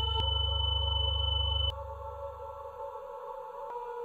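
Sustained drone of several steady electronic tones, a dark ambient music bed. A deep low hum under it drops away suddenly a little under two seconds in, together with the highest tone, and the hum then fades out.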